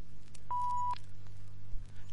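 A single short, steady beep about half a second in, lasting under half a second, over a faint low hum: a filmstrip advance tone, the cue to move on to the next frame.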